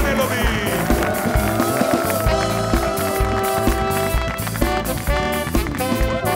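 Live house band playing upbeat music: electric guitar, saxophone, bass and drum kit over a steady beat, with long held notes through the first half.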